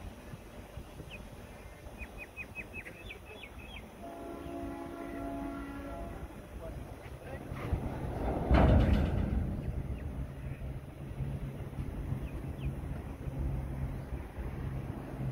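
A train horn sounds one steady note for about two and a half seconds, a few seconds in, over the low hum of a freight train. Around the middle comes a loud rush of noise, the loudest moment, and a few short bird chirps come just before the horn.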